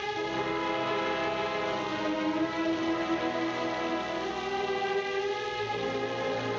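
Orchestral film score: bowed strings holding long notes, moving to a new chord near the end.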